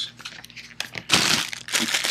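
Plastic packaging bag crinkling as a bagged cable is handled, faint at first and then loud through the second half.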